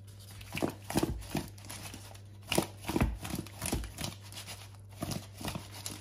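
Raw shrimp, potato halves, sausage slices and corn pieces being turned over by hand in a wooden bowl: irregular soft knocks and thuds of the pieces against each other and the bowl.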